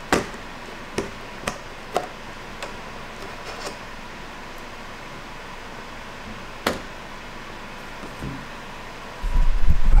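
Sharp plastic clicks and taps of a clear plastic tarantula enclosure lid being pried loose and lifted off, several in the first four seconds and one more a little before seven seconds. Near the end, a loud low rumble of handling noise as the camera is picked up.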